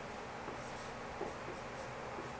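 Dry-erase marker writing on a whiteboard: faint, short strokes as the characters are drawn.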